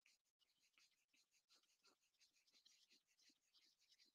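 Near silence, with faint, irregular scratching and rustling from hands handling a leather bag.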